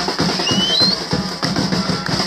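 Batucada percussion ensemble playing a dense, driving samba rhythm on bass drums and snare drums. A brief rising high note cuts through about halfway.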